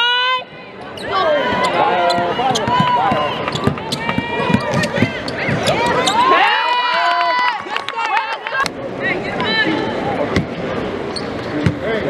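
Live basketball on a hardwood court: a ball bouncing, sneakers squeaking on the floor, and players and spectators calling out.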